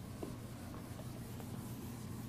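Whiteboard eraser being rubbed back and forth across a whiteboard, wiping off marker writing: a faint, steady scrubbing with a small tick or two.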